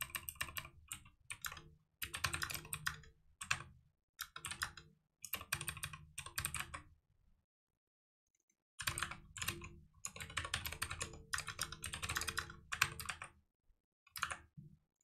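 Computer keyboard being typed on in quick bursts of keystrokes, with a pause of about two seconds after the middle.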